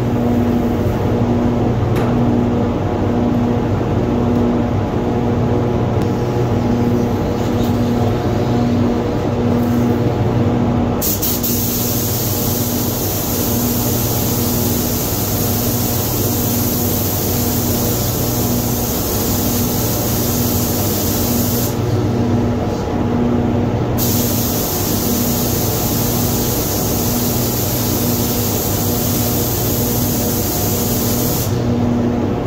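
Steady hum of a spray booth's ventilation, with a tone that pulses evenly. About a third of the way in, compressed air starts hissing from a paint spray gun, stops for a couple of seconds, then hisses again.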